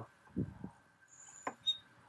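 Fluid extractor sucking the last of the engine oil up its hose through the dipstick tube: a few faint, irregular sucking sounds like a straw at the bottom of a milkshake, as air is drawn in with the oil because the sump is nearly empty.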